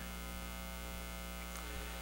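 Steady electrical mains hum: a low, even buzz with a ladder of evenly spaced overtones, unchanging throughout.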